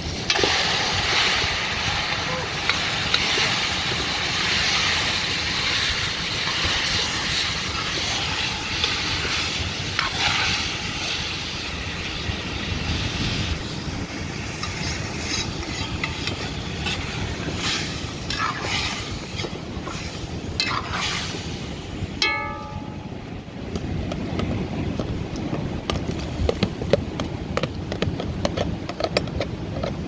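Food sizzling in a large aluminium pot while a metal spoon stirs it, with scrapes and clinks of the spoon against the pot. The sizzling is strongest for roughly the first half, then thins out to scattered clicks and scrapes.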